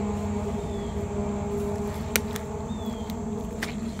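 Road traffic: a passing vehicle's steady drone fades over the first second or so, leaving a low rumble of traffic, with a sharp click about two seconds in.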